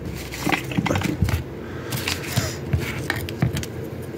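Irregular small clicks, knocks and rustles of handling close to the microphone, with no steady tone among them.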